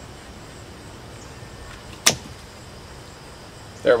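One sharp snip of bypass pruners cutting through the slender green trunk of a money tree bonsai, about two seconds in.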